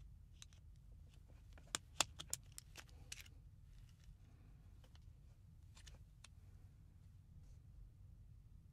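Faint small clicks and taps of a cartridge fuse being prised out of its metal clips in a three-pin plug with a screwdriver tip, with a quick cluster of sharper clicks about two seconds in and a few scattered ones later.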